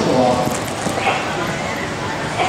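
Hoofbeats of an American Saddlebred horse going past close by on the dirt footing of an arena, with voices in the background.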